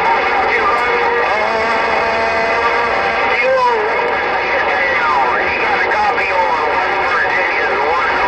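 CB radio speaker receiving on channel 26: garbled, overlapping voices that cannot be made out, over steady static with faint steady whistling tones.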